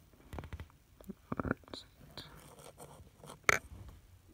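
Handling noise close to the phone's microphone as the phone, its strapped-on lens and the coin are moved: a few soft clicks and rubbing sounds, with a sharper knock about three and a half seconds in.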